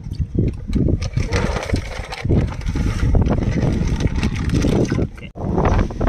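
Wind buffeting the microphone outdoors, a loud, uneven low rumble that breaks off briefly about five seconds in.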